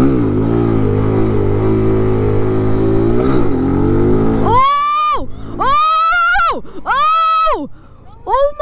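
Mini bike's single-cylinder engine revving up and pulling hard, with a brief dip and recovery in pitch about three seconds in as the rider shifts gear mid-wheelie. From about four and a half seconds the engine gives way to four high-pitched excited yells from the rider.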